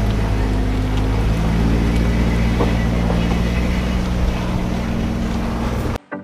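Class A motorhome's engine running steadily, with a broad rushing noise over its low hum.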